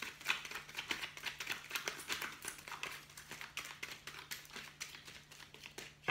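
A deck of tarot cards shuffled by hand: a rapid, irregular run of soft clicks and slaps as the cards slide and knock together.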